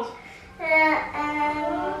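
A young child's drawn-out, hesitant "uhh... umm", held on a fairly steady pitch almost like singing, starting about half a second in.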